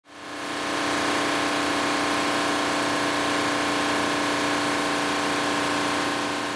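High-speed envelope-making machine running: a steady mechanical hum with constant tones over a hiss, fading in over the first second.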